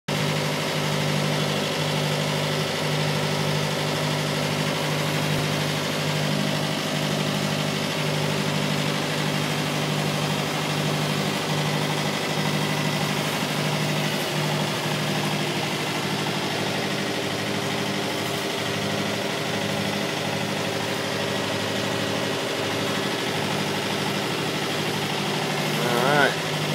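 Motorboat engine running steadily while the boat is under way: an even low drone, with a rush of wind and water over it.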